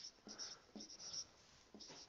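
Felt-tip marker writing figures on a whiteboard: a few short, faint, high-pitched strokes.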